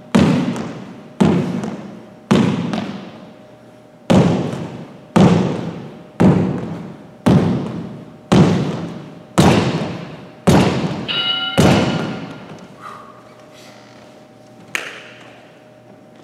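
Sneakered feet stepping down onto a hardwood gym floor about once a second in a high-knee ankling drill, each footfall echoing in the large hall. A brief shoe squeak comes near the end of the run of steps, then one lighter step.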